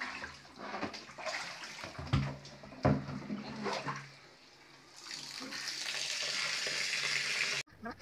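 Water sloshing and splashing in plastic tubs as mustard seeds are washed, with a couple of knocks about two and three seconds in, then a steady rush of running water that cuts off suddenly near the end.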